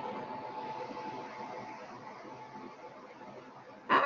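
Steady background hiss with a faint hum from an open microphone line, slowly fading toward the end.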